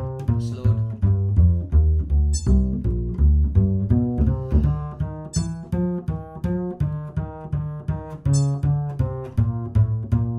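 Upright double bass played pizzicato in a walking line, one plucked note per beat at about 160 beats per minute. A short high metronome beep sounds every three seconds, three times, marking beat four of every other bar.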